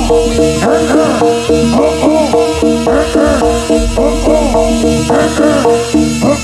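Jaranan gamelan accompaniment: drums and percussion in a fast rhythm over sustained melodic tones, with quick rising-and-falling pitch swoops repeating several times a second.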